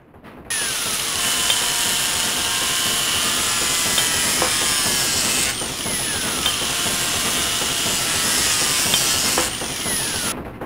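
Loud, dense, hissing electronic sound design that cuts in suddenly, with gliding tones that fall and rise again, repeating about every five seconds, and a few sharp clicks.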